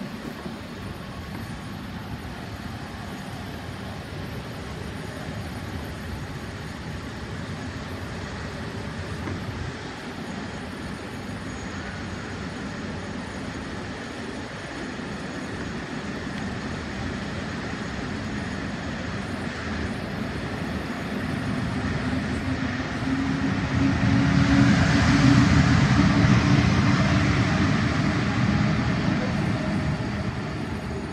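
Electric trains moving through a station: the steady rumble of a train running past, then an approaching SNCB electric locomotive-hauled train that grows louder from about twenty seconds in, peaking with a steady low hum and hiss before easing off near the end.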